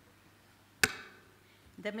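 A single sharp knock with a short ringing tail, about a second in, against a quiet hall; a woman starts speaking near the end.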